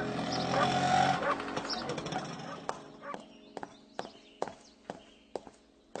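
Background music that stops about a second in, followed by a string of sharp, irregular knocks, several a second, over a quiet background.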